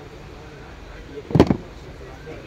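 A single short, loud thump or knock about one and a half seconds in, over faint background chatter.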